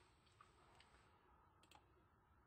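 Near silence: room tone, with a few faint computer mouse clicks, one under half a second in and a couple more near the end.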